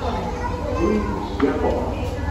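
Indistinct chatter of several people, children's voices among them, over a steady low hum.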